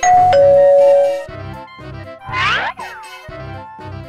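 Doorbell ding-dong chime: a higher note then a lower one held for about a second, over children's background music with a steady beat. A second later a cartoon sound effect glides up and back down.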